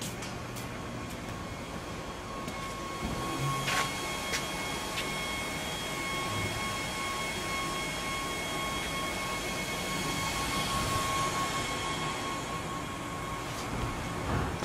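Steady whir and hiss of powered shop machinery, with a thin high whine that sets in a few seconds in, and a couple of sharp clicks around four seconds.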